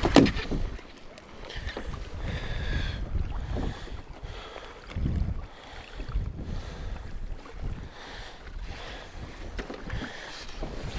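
Wind buffeting the microphone over choppy water lapping at a kayak, with faint scrapes and rustles of handling. A brief spatter of water fades in the first half second.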